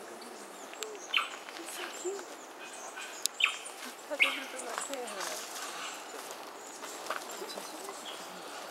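Koala's claws gripping and scraping eucalyptus bark as it climbs, heard as scattered sharp clicks and cracks, the loudest about a second in and twice around three and a half to four seconds in.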